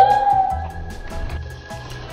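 A voice slides up into one long held "ooh" of suspense over background music with a steady bass beat.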